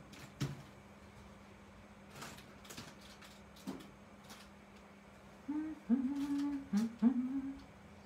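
A woman humming a few short notes near the end, after some light clicks and taps as a clear stamp on an acrylic block is handled and pressed onto the paper.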